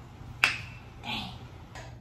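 A single sharp click about half a second in, with a short ringing tail.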